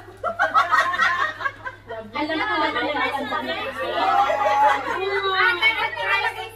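Several women talking over one another in lively chatter, with laughter.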